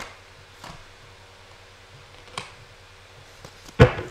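Tarot cards being handled on a table: a few soft taps, then near the end one sharp slap as a card is laid down.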